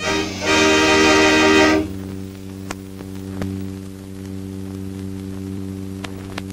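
The background music ends on a held final chord of about a second and a half, which cuts off. After it comes a steady low hum with a few faint clicks, the noise of an old film soundtrack between segments.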